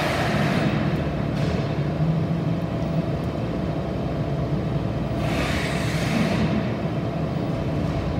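A steady mechanical hum, with two swells of hissing noise lasting about a second each, one at the start and one about five seconds in.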